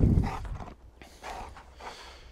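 A brief low rumble at the start, then a few soft, irregular huffs of breath from a Dogue de Bordeaux, which is tired after rough play.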